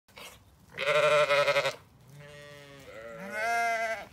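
Zwartbles ewes bleating: one loud, wavering bleat about a second in, then a lower, longer bleat that rises in pitch near the end.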